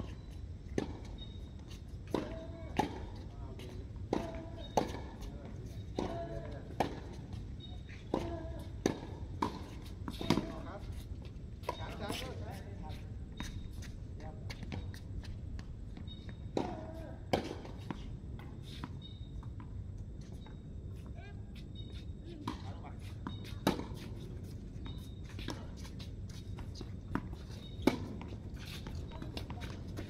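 Tennis rally on a hard court: the ball bouncing and being struck by rackets, pairs of sharp knocks roughly every two seconds. There is a lull about halfway through, then a few more hits near the end.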